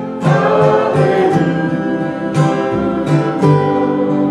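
Live acoustic band: two acoustic guitars strummed and an upright double bass plucked, with a woman singing over them.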